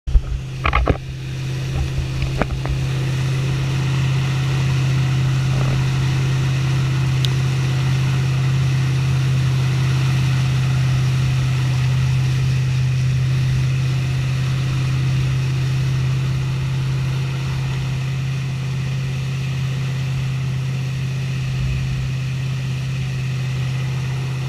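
Tow boat's engine running with a steady low drone, over the rushing hiss of wake water and spray around the surfboard. A few sharp loud knocks or splashes in the first second or two.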